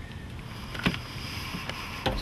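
A steady background hiss with one sharp click a little under a second in and a fainter tick later.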